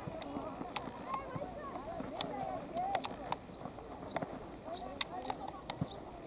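Boys' voices shouting and calling across a football pitch, with scattered sharp knocks of the ball being kicked and played during the match.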